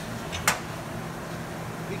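A single sharp clink about half a second in as a hand tool is picked up from the concrete floor, over a steady low background hum.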